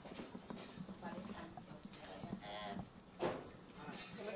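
Dinner-table clatter: bowls, spoons and chopsticks making small clicks and clinks while people talk quietly in the background, with one louder knock a little over three seconds in.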